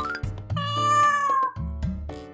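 A single cat meow, about a second long, its pitch sagging at the end, played as a sound effect over background music with a steady bass beat.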